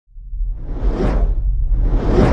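Cinematic whoosh sound effect over a deep, steady rumble: it swells to a peak about a second in and fades, and a second whoosh starts to swell near the end.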